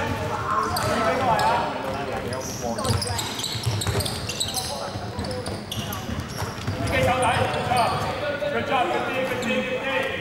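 Basketball game sounds in a large indoor hall: a basketball bouncing on the wooden court, short high-pitched sneaker squeaks, and players calling out to each other.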